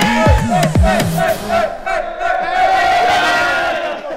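A group of men shouting and cheering together in celebration. Under the first second or so, the tail of a music track with deep falling bass slides plays, then it stops and only the yelling goes on.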